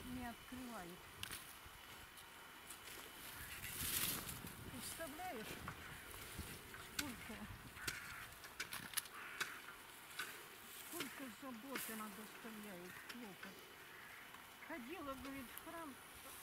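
Faint, indistinct voices of people talking, with scattered small clicks and a short rustle about four seconds in.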